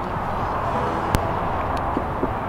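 Steady outdoor background noise, with one sharp click a little past halfway.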